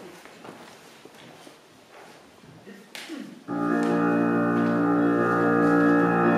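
Faint shuffling and rustling, then about three and a half seconds in a steady held chord of keyboard-like accompaniment starts suddenly and sustains.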